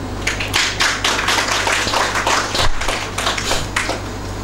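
A small audience applauding, many hands clapping at once; the clapping starts just after the beginning and dies away near the end.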